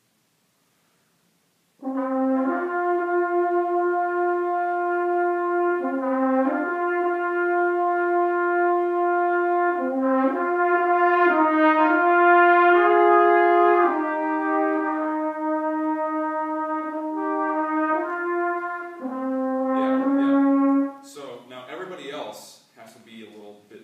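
Trumpets and French horn playing a slow, flowing theme together in held notes that step from pitch to pitch. They come in about two seconds in and stop together about a second before the end.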